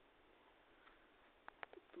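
Near silence: faint room tone, with a few short clicks near the end.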